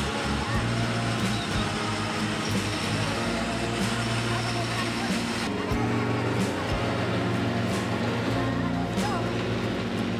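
Diesel engines of a heavy-haulage road convoy running at low speed with street traffic, under a steady background music bed.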